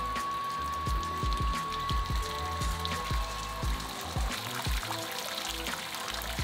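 Hot water jetting from the recirculation inlet pipe and splashing into a stainless steel mash tun, pumped over from the hot liquor tank, under background music with a steady low beat.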